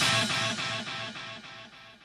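A guitar playing a quick repeated figure, about five notes a second, alone after the full band stops, fading out to silence as the heavy rock song ends.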